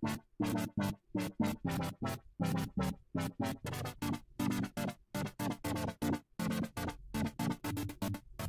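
Logic Pro X Retro Synth playing a held chord through its 24 dB low-pass filter, the cutoff swept by the LFO so that the chord pulses in and out about four times a second. The LFO waveform is being switched between shapes, which changes the character of the pulsing.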